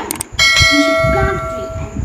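Subscribe-button notification sound effect: two quick clicks, then a bright bell ding with many overtones that rings on and fades slowly over about a second and a half.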